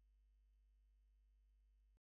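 Near silence: a faint, steady low hum that cuts off at the very end.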